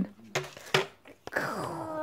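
A child's voice making a play sound effect for a toy car diving into a bowl of popcorn: a couple of short sounds, a click, then a whine that slides down in pitch.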